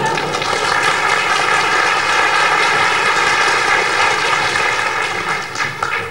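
Audience applauding steadily, then dying away at the end.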